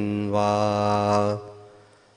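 A male voice chanting, holding the final syllable of a Sinhala Buddhist meditation line on one steady note, then fading out about a second and a half in.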